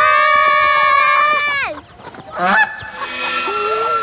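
A goose honking: one loud, drawn-out honk of about two seconds that drops in pitch as it ends, then a shorter rising call about half a second later.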